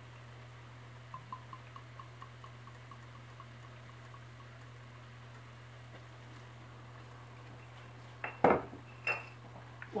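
Madeira glugging from a bottle into a metal measuring cup, a run of small even ticks about four a second. Near the end come two sharp metal clinks of the measuring cup against the rim of the steel stockpot, the first one loud.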